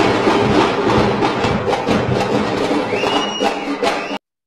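Music mixed with crowd noise and sharp clicks, loud throughout, with a brief high steady tone near the end.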